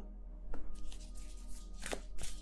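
Tarot cards being handled, a few short, irregular rustles and flicks of card stock, over soft steady background music.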